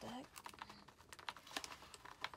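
Faint, irregular clicks and taps of hands working at a cardboard box, tugging at a bottle that is stuck to the box.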